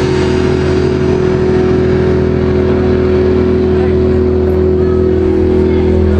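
Electric guitar and bass holding a final chord through the amplifiers, a loud steady drone that rings on without drums: the last chord of a live rock song ringing out.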